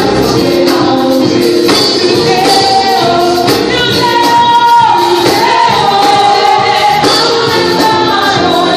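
Live gospel worship song: a woman sings lead into a microphone through the church PA, with sustained sung notes over amplified musical accompaniment and a steady beat.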